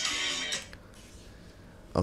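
A song playing through a smartphone's small speaker, picked up by a condenser microphone in front of it. It is stopped about half a second in, leaving faint room hiss.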